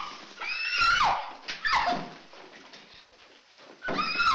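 A woman's high shrieks during a struggle: two short cries that fall in pitch, about a second apart, then a lull before another cry starts near the end.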